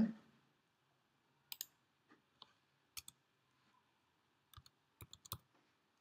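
Faint, scattered clicks of a computer mouse and keys being pressed, with a quick run of several clicks about five seconds in.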